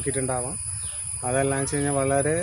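A man talking in Malayalam in two short phrases, with a pause in between. A steady high-pitched whine runs underneath.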